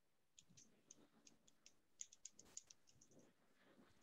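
Near silence: room tone with faint scattered clicks, and a quick run of about six clicks about two seconds in.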